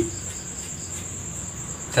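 Crickets trilling steadily at a high pitch.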